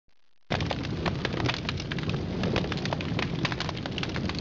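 Logo-ident sound effect: a dense crackling noise over a low rumble, starting abruptly about half a second in and running steadily.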